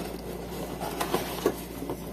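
Faint handling noise: a few light knocks and rustles as a plastic lamp socket is set down on a plastic-covered table and a hand reaches into a cardboard box.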